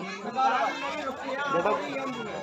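Indistinct chatter of people's voices, low and unclear, with no single clear speaker.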